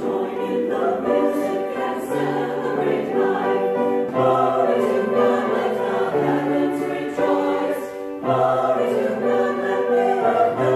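Mixed church choir of men's and women's voices singing in sustained phrases, with short breaks between phrases.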